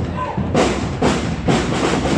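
Parade drums beating a steady march, about two strokes a second, over a murmur of crowd voices.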